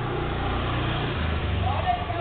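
Small motorbike engine running, its note dropping to a lower pitch about halfway through as the revs fall.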